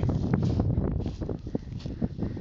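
Wind rumbling on the microphone, mixed with the swish and rustle of a twig broom beating out burning dry grass. It is louder in the first second.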